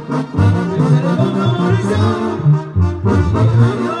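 Live brass band playing loudly: trombones and trumpets carry the melody over a sousaphone's rhythmic bass notes.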